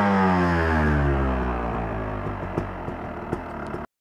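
2009 Yamaha YZ250's single-cylinder two-stroke engine, just after its first start, falling back from a rev toward idle, its pitch dropping over the first couple of seconds, then running lower and unevenly with light ticks before it cuts off suddenly near the end.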